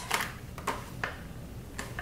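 About four light, sharp clicks and taps spread over two seconds as a paper sticker sheet is handled and moved over a planner page.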